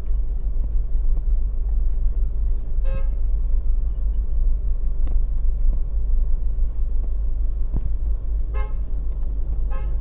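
Steady low rumble of a car's engine and road noise from inside the cabin, with three short car-horn toots: one about three seconds in and two close together near the end.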